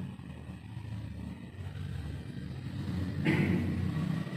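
A low, steady rumble, with a brief louder noise near the end.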